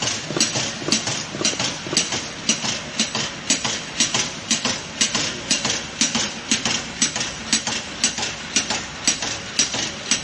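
Wooden spoon logo printing machine running, its chain conveyor carrying wooden spoons past the printing head, with a steady rhythmic clatter of sharp clicks about twice a second over a running hum.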